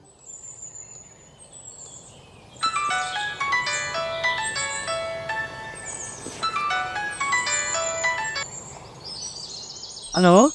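Thin high bird chirps, then from about two and a half seconds in a bright melody of short bell-like notes, busy and bouncing, which thins out shortly before the end.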